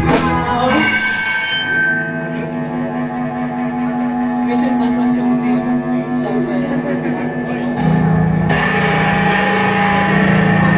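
Live rock band at a breakdown: after a hit, electric guitar notes ring on, sliding down in pitch at first and then held, while the drums mostly drop out. Bass and drums with cymbals come back in near the end, louder.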